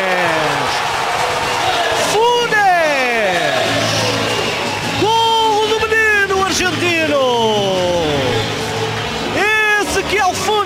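A man's long, drawn-out excited shouts celebrating a goal, several sustained cries sliding down in pitch, over a crowd cheering in an arena.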